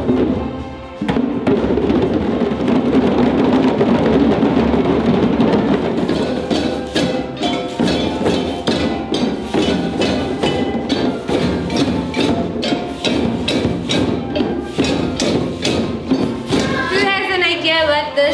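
A group of djembe hand drums played together, with many sharp hand strikes in a quick, uneven rhythm, joined by a woven basket shaker. Children's voices run under the drumming, and a voice with a wavering pitch comes in near the end.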